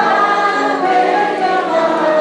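A group of voices singing a song together, holding each note and moving from note to note.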